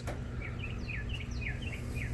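Small birds chirping: a rapid series of short, high chirps, about six a second, over a steady low hum.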